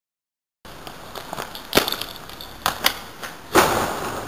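A short silence, then the camera's own microphone comes in with a steady hiss of outdoor background noise and several sharp knocks, the loudest about three and a half seconds in.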